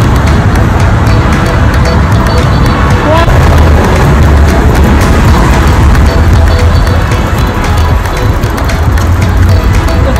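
Heavy, steady wind rumble on a phone microphone while riding a bicycle, with background music underneath.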